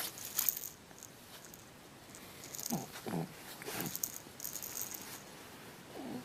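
A baby of about three months makes a few short grunting vocal sounds, gliding up and down in pitch a little after halfway, while a toy rattle is shaken in short bursts of high rattling.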